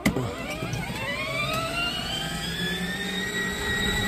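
Electric drive motors of a 24 V ride-on toy tractor whining as they run up to speed, the pitch rising over the first couple of seconds and then holding steady. The tractor is running on a DeWalt power-tool battery through a step-up converter after the repair.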